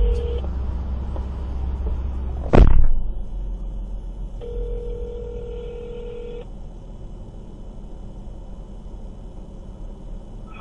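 Telephone ringback tone as a call rings out: one steady two-second ring in the middle, with the tail of the previous ring just at the start. A single loud thump about two and a half seconds in, over a low steady rumble.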